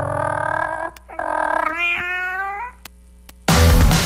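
Two long meows answer the line "and the cat replied" at the close of a folk song, the second rising in pitch near its end. About three and a half seconds in, a loud burst of jingle music cuts in.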